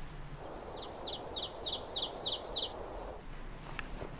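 A bird singing a quick run of about seven repeated high chirps over a soft background hiss, starting about half a second in and stopping around three seconds in.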